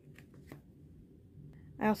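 Faint rustle of paper coloring-book pages being handled, with two soft page sounds in the first half second. A woman starts speaking near the end.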